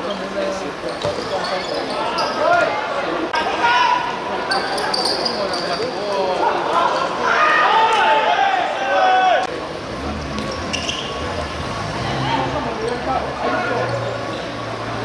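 Players calling and shouting to each other during a small-sided football match, with the thud of the ball being kicked and bouncing on the pitch. The shouting is loudest about seven to nine seconds in. From about ten seconds a low steady hum comes in under the play.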